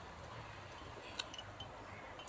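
Quiet room tone with a few faint, light clicks a little over a second in, from a glass jar of tea with a straw being handled.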